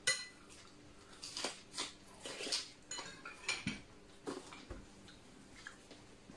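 Metal cutlery clinking against a glass jar and plates: one sharp, ringing clink at the start, then scattered lighter clicks and scrapes.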